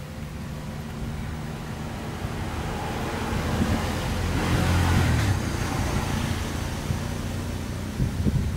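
A motor vehicle passing by: a low engine rumble with tyre noise that builds to its loudest about five seconds in, then fades.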